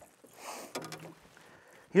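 Water splashing briefly as a smallmouth bass is scooped into a landing net beside an aluminium boat, followed by a short grunt and a few light clicks.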